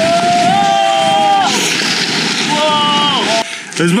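Snow-laden conifer branches scraping and rustling against a person and a large backpack as he forces his way through the trees. A man's voice gives two drawn-out cries, each falling off at the end; the rustling stops shortly before a laugh at the very end.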